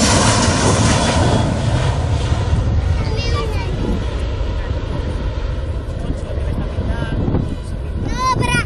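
Boeing 737 airliner taking off at takeoff thrust: a loud, steady jet engine roar that slowly fades as the aircraft climbs away.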